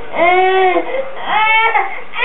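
A 12-month-old baby crying in two loud wails with a short catch of breath between them, a frustrated cry at not managing to fit a block into a shape sorter.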